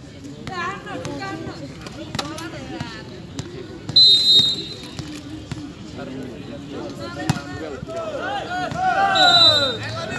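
Referee's whistle blown twice, short steady blasts about four seconds in and near the end, over the chatter and shouts of a crowd of spectators. A few sharp knocks of a volleyball being struck or bounced come between the blasts.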